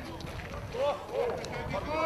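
Voices calling and shouting during a 3x3 basketball game, over the footfalls of players running on the court; the shouts get louder near the end.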